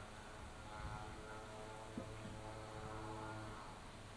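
A faint, steady hum with a stack of overtones, fading out shortly before the end, and a single soft knock about two seconds in.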